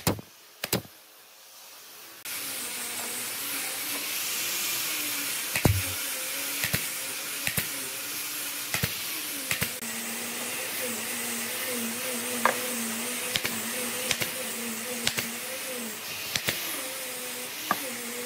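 Pneumatic brad nailer firing nails into pine boards, a sharp shot every second or so. About two seconds in a motor starts and runs steadily with a hum and a hiss under the shots.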